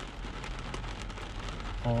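Rain pitter-pattering all over the truck, heard from inside the cab: a steady hiss of many small drop taps.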